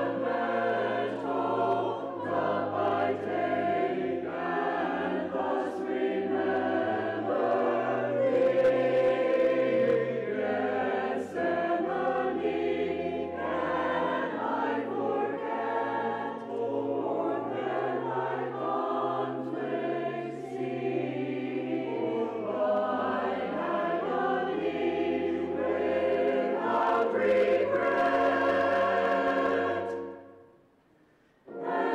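A mixed church choir of men and women singing a sacred anthem in parts, with sustained low notes underneath.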